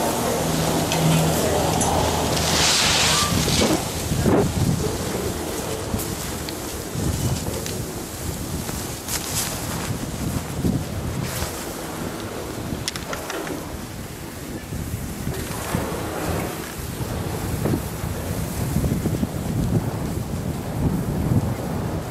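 Wind buffeting the camera's microphone and skis scraping over groomed snow, the noise swelling and fading in repeated surges. A steady low hum from the chairlift station machinery fades out about three seconds in.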